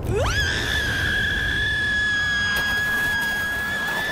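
A woman's long, high-pitched scream that swoops up sharply at the start, then holds one steady pitch, rising slightly near the end.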